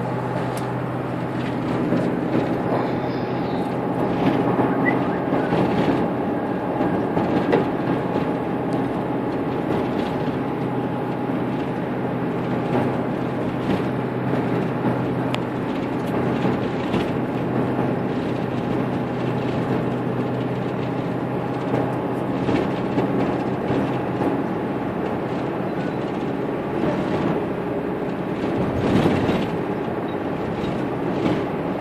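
Steady cabin noise heard from inside a moving road vehicle: a constant engine hum under road and tyre noise.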